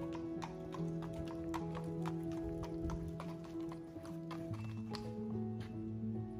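Background music with the hooves of an Icelandic horse clip-clopping on paving stones as it walks, an irregular run of sharp clops.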